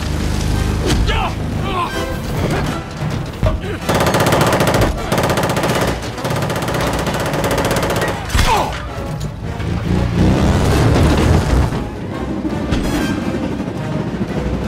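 Action-film soundtrack: a long burst of rapid machine-gun fire around the middle, mixed with film score music and other sound effects.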